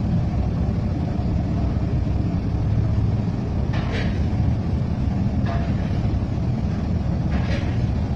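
A steady, loud, low background rumble, with a few brief faint higher sounds at about four seconds, five and a half seconds and seven and a half seconds in.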